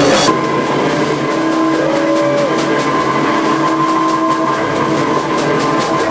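Live noise-rock band holding long, steady droning tones through distorted electric guitar amplifiers, like feedback, with one tone bending briefly. Quick percussive hits, most likely drums, come faster toward the end.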